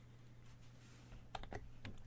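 Quiet room tone with a low steady hum, broken by a few faint clicks about a second and a half in.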